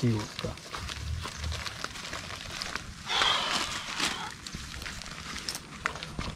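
A short rustle about three seconds in, over faint voices and outdoor background.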